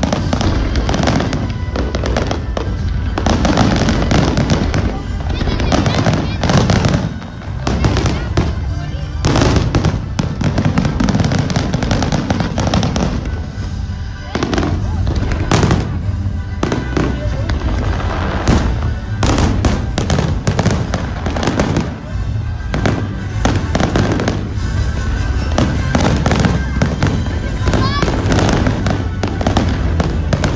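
Fireworks display in full barrage: a dense, unbroken run of shell bursts and crackle with a heavy low rumble underneath.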